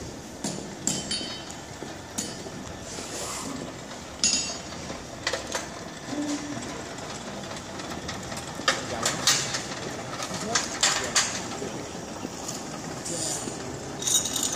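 Indistinct voices of people standing around, with scattered short clinks and knocks from a blacksmith working with tongs and tools at a coal forge.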